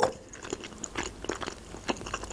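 Close-miked chewing of a mouthful of boiled pelmeni dumplings: many small, irregular mouth clicks, with a slightly stronger click near the end.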